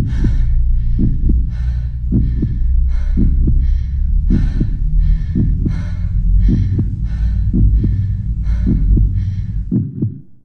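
Heartbeat sound effect: a double beat about once a second over a steady deep hum, with a rhythmic hiss running alongside. It fades out just after the end.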